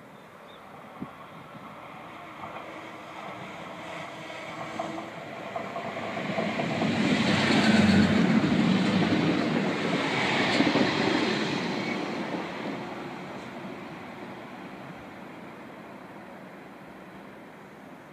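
A DB Class 642 Desiro diesel multiple unit passing close by: its running noise builds over several seconds, is loudest about eight to eleven seconds in, then fades away.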